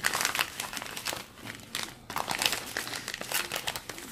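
Clear plastic wrapping crinkling as it is handled, a dense run of irregular crackles with no break.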